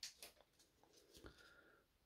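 Near silence, with a few faint ticks at the start as a stack of trading cards is handled.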